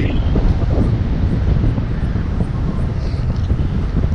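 Wind buffeting the camera's microphone in flight under a tandem paraglider: a loud, steady low rumble.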